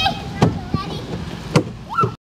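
High-pitched children's voices in short calls, with two or three sharp knocks.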